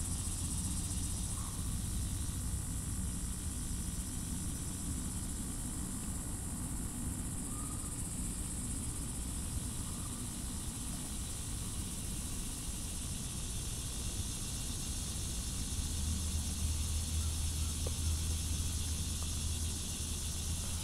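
A high, even chorus of insects over a low steady rumble that grows a little louder about sixteen seconds in.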